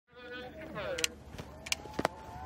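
Two sharp clicks from a skier's gear at the start gate, one about a second in and one near the end, over background voices.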